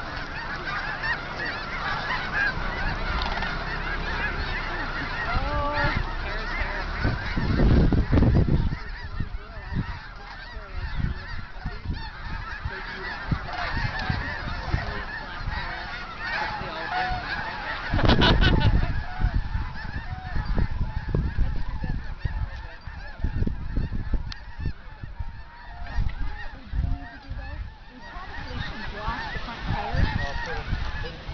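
A large mixed flock of snow geese and sandhill cranes calling in a dense, unbroken chorus of honks. Two loud low rumbles, from wind or handling on the microphone, come about eight and eighteen seconds in.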